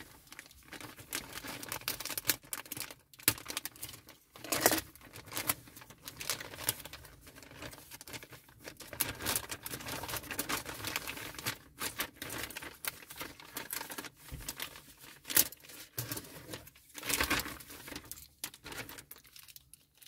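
Hands working small plastic model-kit parts: irregular clicks and snaps as pieces are pressed together, mixed with rustling of plastic and a few sharper knocks.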